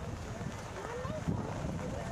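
Wind rumbling on the camera's microphone, with faint chatter from people nearby.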